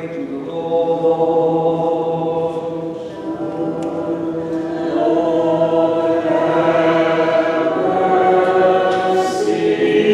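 Choir singing an Eastern Orthodox liturgical hymn in slow chant, the melody moving in held notes over a steady low drone note.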